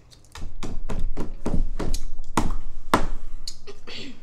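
Hands slapping or drumming on a tabletop: a quick run of about a dozen knocks, four or five a second, with the loudest knock about three seconds in.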